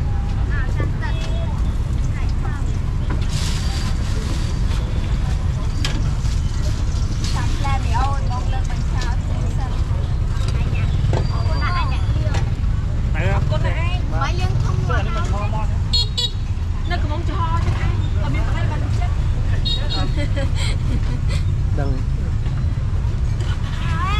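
Busy street-market ambience: scattered voices of people talking over a steady low rumble of traffic, with short vehicle horn toots in the second half.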